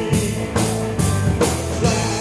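Rock band playing live, with drum kit, electric guitar and bass guitar. The drums keep a steady beat of about two strokes a second.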